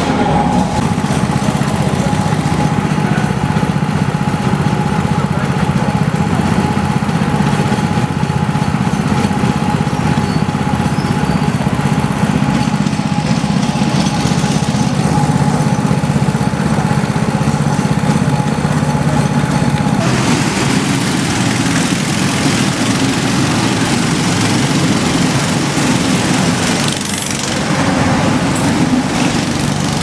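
Go-kart engines running with a steady small-engine drone; the sound changes abruptly about two-thirds of the way through.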